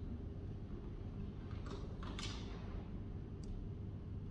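Quiet library room tone: a steady low hum, with a brief soft swish about two seconds in and a faint click near the end.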